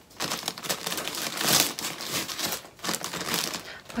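Mailer bag crinkling and rustling as it is pulled and torn open by hand, loudest about one and a half seconds in.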